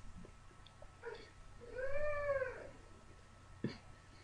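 A cat meowing once: a single call about a second long that rises and falls in pitch. A sharp click follows near the end.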